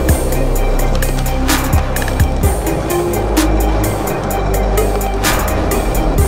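Background music with a steady drum beat and sustained bass, no vocals.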